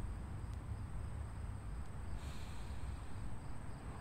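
A man's deep breath, heard as a short hiss about two seconds in, over the steady high-pitched drone of insects and a low wind rumble on the microphone.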